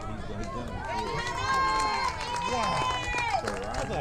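Voices of people at a youth baseball game shouting and calling out, with one long drawn-out yell held for about two seconds in the middle.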